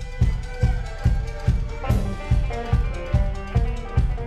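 Live folk-rock band playing an instrumental passage: fiddle and guitar over a steady kick-drum beat, a little over two beats a second.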